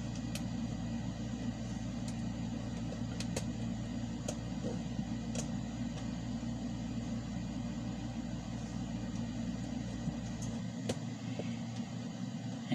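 A steady low background hum whose deepest part cuts out about ten and a half seconds in, with a few faint, sharp clicks of a small screwdriver pressing metal battery tabs flat.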